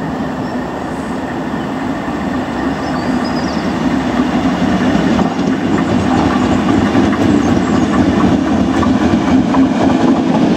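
A Class 73 electro-diesel locomotive hauling a Network Rail test train approaches and runs past, getting steadily louder, with the wheels clattering rhythmically over rail joints in the second half as the coaches pass.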